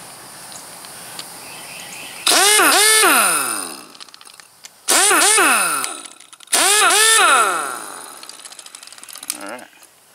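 Half-inch drive pneumatic impact wrench run three times, spinning freely with no socket and no load: each trigger pull starts with a sudden whir that falls in pitch as the tool winds down after release. It doesn't sound real noisy because it has baffles and a muffler on its exhaust.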